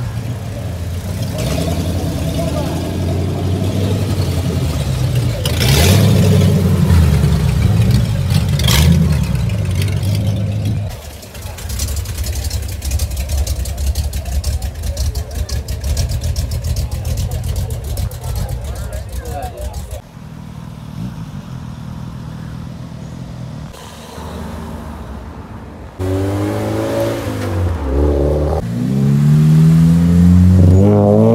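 Car engines running in a string of short clips that change abruptly every several seconds. Over the last few seconds one engine revs up, its pitch climbing as the car accelerates away.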